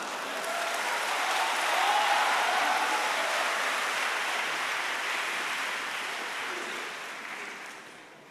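Large audience applauding at the close of a crosstalk act, swelling over the first two seconds and then gradually dying away near the end.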